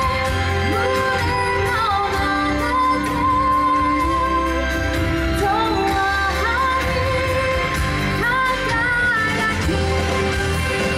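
A woman singing a slow song over backing music, holding long notes with vibrato.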